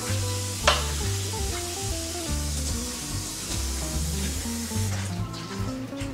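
Water running into a stainless steel kitchen sink, stopping about five seconds in, with one sharp metal clank about a second in. Background music plays throughout.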